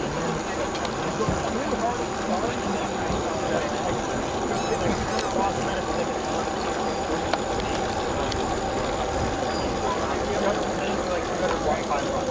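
Outdoor background of distant, indistinct voices over a steady noise, with a few brief high chirps about halfway through.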